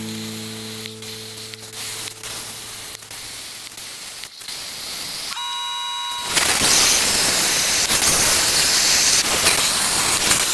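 Plasma cutter cutting into a galvanized steel scuba tank: a loud, steady hiss that starts abruptly about six seconds in, just after a brief high whine.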